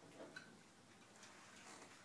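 Near silence: room tone with a sharp faint click near the start and a few faint ticks later.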